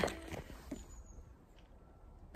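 A woman's short laugh at the start, trailing off into faint, low background noise.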